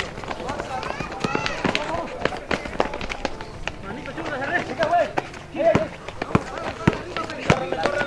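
Voices calling and shouting on an outdoor basketball court, with many irregular sharp knocks of a basketball bouncing on concrete and players running.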